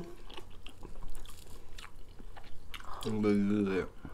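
Close-up eating of fried chicken wings: biting and chewing with small crunchy clicks, then a short low hummed voice near the end.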